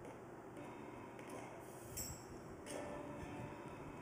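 Music played faintly and thinly through a loudspeaker fed through a small capacitor in series, which blocks the low frequencies and leaves only the upper range. A light click comes about two seconds in.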